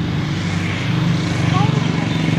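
Road traffic: motorcycle engines passing close by, a steady low hum that grows a little louder towards the end.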